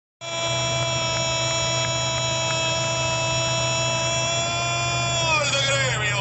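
A football commentator's long, drawn-out goal cry. One steady held note lasts about five seconds, then falls in pitch near the end as it runs into speech, over a steady low hum.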